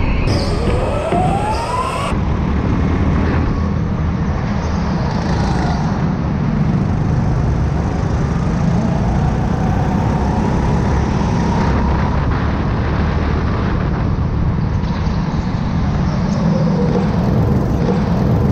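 Go-kart running on an indoor track, heard from the onboard camera: a steady low running noise with a faint whine that glides up near the start and rises and falls gently later.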